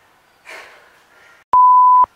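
A loud, steady, single-pitch electronic bleep of the kind dubbed over a word to censor it. It cuts in sharply about one and a half seconds in and lasts about half a second.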